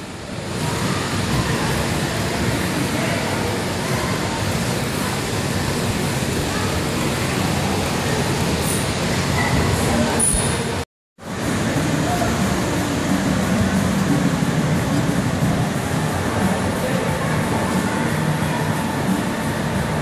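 Steady din of a busy indoor play hall: echoing background chatter and children's voices over a constant wash of noise. The sound cuts out for a moment about eleven seconds in.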